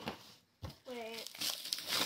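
Plastic stretch wrap crinkling as it is pulled off a cardboard box, busiest in the second half.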